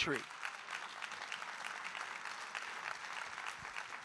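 Audience applauding: a steady patter of many hands clapping that slowly dies down.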